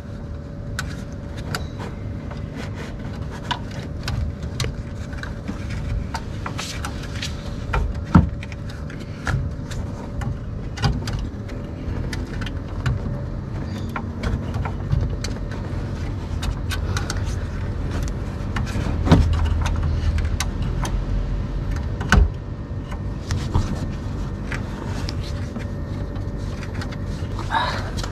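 Scattered clicks and knocks of plastic and metal as a gloved hand works the retaining clip of a D1S xenon bulb into place in a BMW F30 headlight housing, pressing it in and sliding it to lock. A few louder knocks come about 8 s in and around 19 and 22 s, over a low rumble and a faint steady hum.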